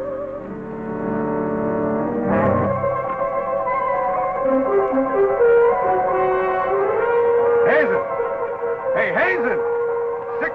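Dramatic film score music with sustained brass chords. Near the end come several fast swooping tones that rise and fall in pitch.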